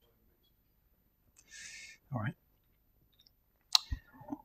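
Quiet room with a faint short hiss, then near the end a single sharp click with a low thump: a laptop key pressed to advance a presentation slide.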